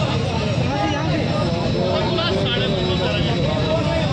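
Crowd of men talking over one another in a street gathering, with a steady low rumble underneath.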